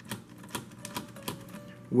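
Plastic clicking from a Dual Attack Nasutoceratops action figure as the button on its back is pressed, working the tail-slash mechanism: a run of sharp, irregular clicks, several a second.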